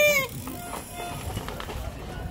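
Spectators' voices at a mountain-bike race: a loud, high-pitched held shout cuts off about a quarter second in, followed by faint scattered voices and outdoor murmur.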